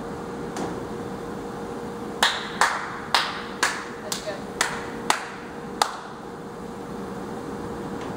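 A run of about eight sharp claps or knocks, roughly two a second, each ringing briefly in the room, over a steady low hum.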